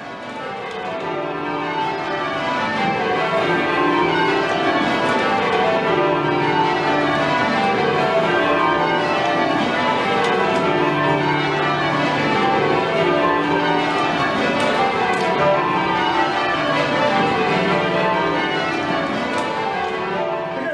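A ring of Whitechapel-cast church bells rung full circle from ropes, heard from the ringing chamber, the strokes following one another in repeated descending rows. It fades in over the first few seconds, then holds steady.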